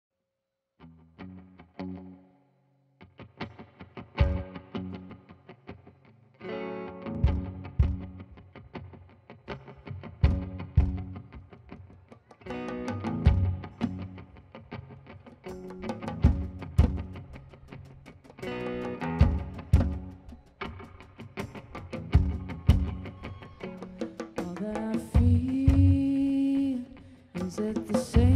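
Live band playing an instrumental intro: electric guitar through effects, bass guitar and drum kit on a steady beat. A sparse guitar phrase opens, then the full band comes in about four seconds in.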